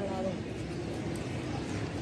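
Steady outdoor background noise, an even rumble with no distinct events, after the tail of a man's word at the very start.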